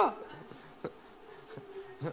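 A pause in a man's speech through a microphone: his last word fades at the start, then a faint steady hum with one short click a little under a second in.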